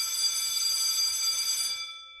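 Electric school bell ringing in one steady, continuous ring that fades away near the end, signalling the start of class.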